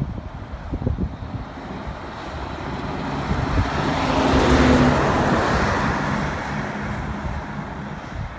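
Scania articulated lorry driving past at road speed: engine and tyre noise swell to a peak about four and a half seconds in, then fade as it pulls away.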